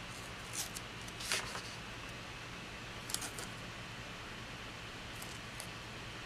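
Faint, scattered paper rustles and soft clicks as sticker sheets are handled and a sticker strip is pressed onto a journal page, over a steady low hum.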